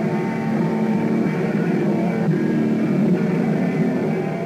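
Electric guitar strummed hard, its chords ringing on without a break.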